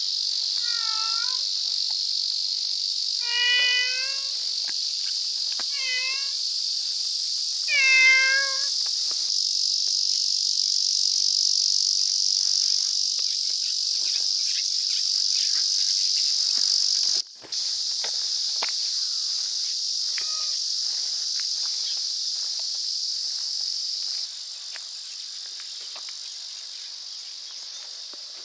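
A cat meows four times in the first nine seconds, short calls that each dip in pitch, over a steady high-pitched insect chorus. After that only faint light ticks are heard under the insects, whose level drops near the end.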